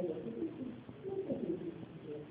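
Muffled speech from a person talking, with nearly all of the voice low in pitch and little clarity.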